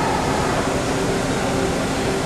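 Steady machine hum from an all-electric CNC tube bender and its loader between bends, a couple of low steady tones over an even noise.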